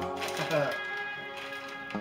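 Crinkling of a plastic snack-chip bag as it is handled and lifted, over steady background music.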